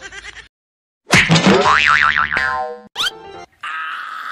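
Cartoon 'boing' comedy sound effect: a loud springy sweep that turns into a wobbling tone for about a second and a half, starting about a second in after a brief silence, with a short second effect just before the end.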